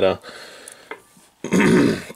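A man clearing his throat once, a short rough burst near the end.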